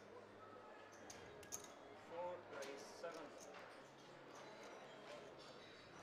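Quiet, scattered clicks of poker chips being handled at the table, with a faint murmur of voices about two to three seconds in.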